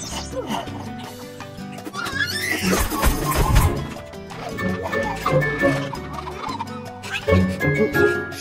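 Cartoon soundtrack: lively background music mixed with comic sound effects and wordless character vocal noises.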